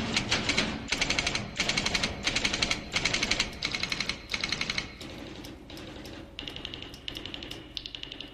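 Manual typewriter typing: rapid bursts of keystrokes striking the paper. The clatter eases off a little past halfway, then the typing resumes.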